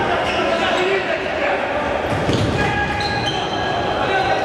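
Futsal match sound in a large hall with an echo: the ball being kicked and bouncing on the wooden floor, players' shouts, and a heavier thump a little past halfway.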